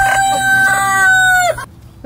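Rooster crowing: one long, held crow that cuts off about a second and a half in.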